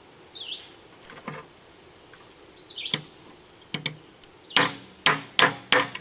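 Hammer blows knocking a 608 ball bearing off an air conditioner fan motor's shaft: a few light taps, then four sharp metallic strikes about a third of a second apart near the end.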